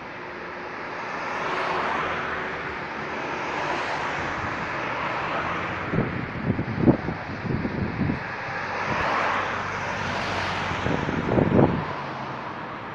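Cars passing on a multi-lane road, tyre and engine noise swelling as each one goes by. Bursts of wind buffet the microphone around six to eight seconds in and again near the end, the loudest moments.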